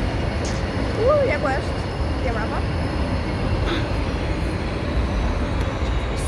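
Steady low street rumble of road traffic, with a short stretch of a woman's voice about a second in.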